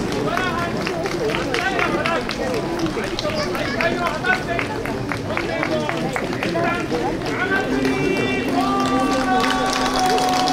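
Many spectators talking at once along a parade route, a mix of overlapping voices. About eight seconds in, a long steady held tone starts and carries on past the end.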